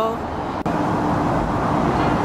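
Steady outdoor urban background noise with the hum of distant road traffic, as a drawn-out voice trails off at the start. A brief click a little over half a second in.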